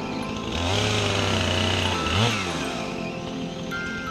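An electric DeWalt chainsaw runs for about two seconds, starting half a second in, then its pitch rises sharply and falls away as it stops, over background music.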